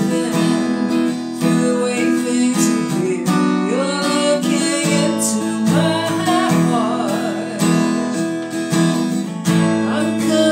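A woman singing a worship song while strumming chords on a Yamaha acoustic guitar.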